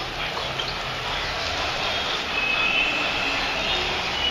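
City street noise, a steady hum of traffic from the road below, with a faint thin high tone for about a second past the middle.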